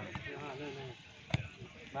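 Voices calling out on a grass football pitch, then a single sharp thud a little past halfway: a football being kicked.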